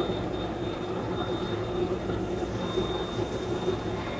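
Aluminium melting furnaces and foundry machinery running: a steady low rumble with a faint high whine.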